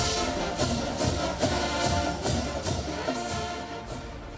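College marching band's brass and drums playing in the stands: held brass chords over a steady drum beat of about two to three hits a second.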